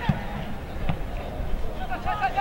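A football being kicked twice on a grass pitch, about a second apart, over players' voices and the open sound of a near-empty stadium.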